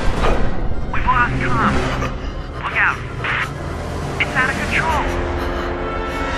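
Dramatic film-style soundtrack music over a steady low rumble, with short snatches of indistinct voice.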